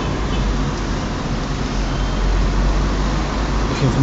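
Steady low road and engine rumble inside the cabin of a moving taxi, heard from within the car while it drives in traffic.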